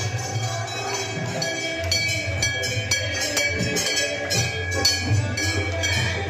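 Hanging brass temple bells rung repeatedly by hand for the aarti. Sharp strikes come a few a second from about two seconds in, over continuous ringing and a low hum.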